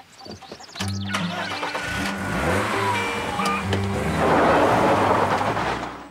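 A car starting up about a second in and driving off, its rushing noise swelling to its loudest around four to five seconds in, under background music with sustained low notes.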